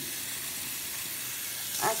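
Kitchen faucet running steadily into a stainless-steel sink as blackberries are rinsed in a bowl under the stream, water spilling over the bowl's rim.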